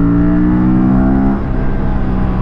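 Aprilia RS 457's parallel-twin engine pulling hard under full acceleration, its note rising steadily. The note breaks off and drops about one and a half seconds in.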